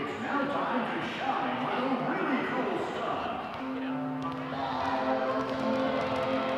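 Many basketballs being dribbled by small children on a hardwood gym floor, scattered bounces under crowd chatter. Music with long held notes comes in about halfway through.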